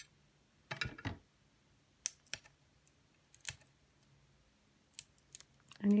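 Fingernails picking at the backing of double-sided tape on a glass craft mat: a handful of short, scattered clicks and scrapes as the liner refuses to peel off.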